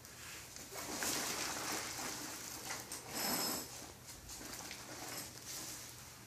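Rustling and shuffling of a fabric backpack being moved and handled on a paper-covered exam table, in a few swells about a second in, about three seconds in and near the end.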